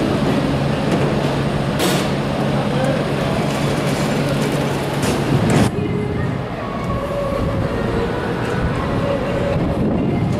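Large truck engines running with a steady low hum, broken by a couple of sharp knocks. A little past halfway the hum cuts off suddenly and gives way to a quieter background of distant engine noise with faint steady tones.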